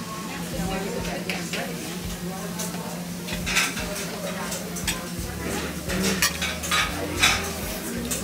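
Cutlery clicking against a china plate and close chewing of a shrimp, over a steady low hum of restaurant room tone that deepens about five seconds in.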